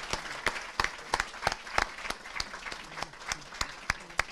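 An audience applauding in a room. The clapping gradually thins out and gets quieter.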